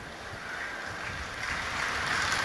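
Large audience's crowd noise, an even hiss that swells steadily louder as the crowd reacts to a spoken line.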